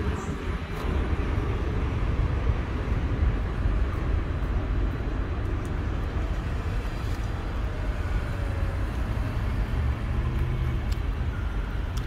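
Steady low outdoor rumble of background noise with no distinct events.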